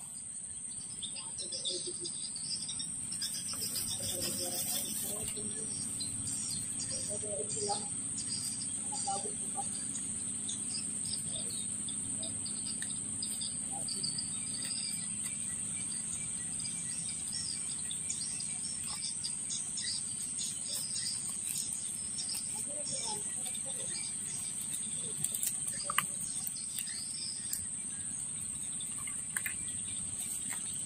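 Insects giving a steady, high-pitched drone, with scattered bird chirps over it.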